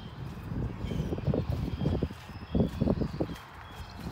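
Footsteps on a concrete yard in uneven clusters of low thumps, with faint short high chirps in the background.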